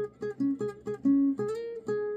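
Classical guitar playing a slow melody note by note on the top strings around the seventh fret: single plucked notes, about four a second, with a short upward slide a bit past halfway and a held note at the end.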